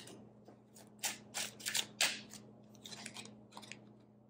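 Tarot cards being handled on a table: a series of short, irregular papery scrapes and swishes as a card is laid down and the next one is drawn from the deck.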